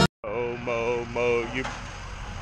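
A man humming three short, slightly bending notes through closed lips, over the steady low hum of an idling vehicle engine. Background music cuts off abruptly at the start.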